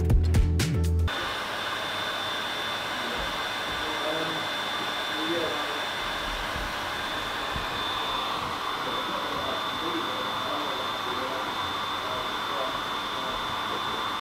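Music that cuts off about a second in, followed by a steady rushing noise, like a fan or blower running, with a faint thin high whine over it.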